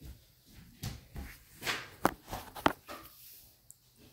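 Footsteps on a wooden floor, then two sharp clicks a little after halfway: the room's light switch being turned off.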